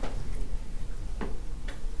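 Pause in speech in a lecture room: a steady low hum, with two light clicks about halfway through.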